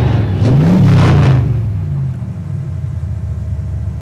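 An engine revving once: the pitch rises to a peak about a second in and falls back, then settles into a low, steady rumble.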